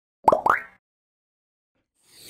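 Intro logo sound effect: two short pops, each rising in pitch, about a quarter second apart, in the first second.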